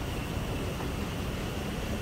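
Steady background noise of a large indoor hall: a low rumble with an even hiss, with no distinct knocks or clicks.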